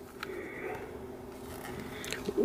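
Faint rubbing and scraping of fingers on a plastic figure and its base as it is turned in the hands, with a small click just after the start.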